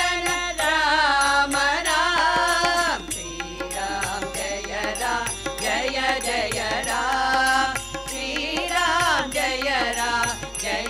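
Women's chorus singing a devotional song together, accompanied by a harmonium and a hand drum beating a steady rhythm.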